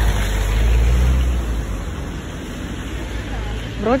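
A car passing on wet asphalt, its rumble and tyre noise loudest in the first second or so and fading away about two seconds in.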